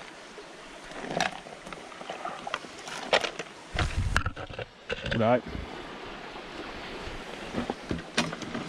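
Steady rush of a nearby creek, with a few sharp clicks and knocks of a plastic snuffer bottle and gold pan being handled, and a heavier low thump about four seconds in.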